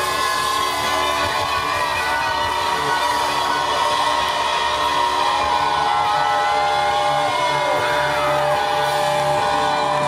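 Live rock band playing, with an electric guitar holding long lead notes that bend and slide in pitch over the band, and a crowd cheering and whooping.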